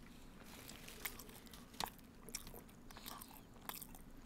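Faint close-up eating sounds: soft chewing of a cream-filled egg-and-cheese sandwich, with a few small mouth clicks.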